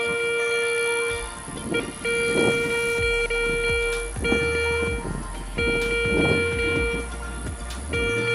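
Garrett Ace 250 metal detector with a NEL Tornado coil sounding its steady buzzy target tone in about four on-off signals, each lasting one to two seconds. The signals come as a silver Golden Horde coin is passed over the coil, which the detector picks up at about 26 cm in air.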